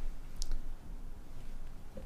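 A single short, faint click about half a second in, over low room tone.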